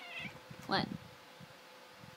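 Domestic cat meowing twice: a short, quieter wavering call right at the start, then a louder meow just under a second in.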